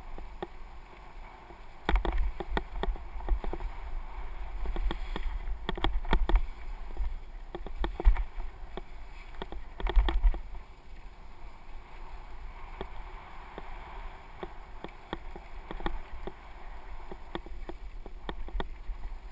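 Mountain bike riding over a rough dirt and gravel singletrack, heard from a bike- or rider-mounted camera: tyres rumbling over the ground and the bike rattling and clicking over bumps, with wind on the microphone. Heavier jolts about two, eight and ten seconds in.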